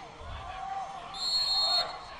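Background crowd and distant voices from the stands, with a short, high-pitched whistle blast lasting under a second, starting about a second in.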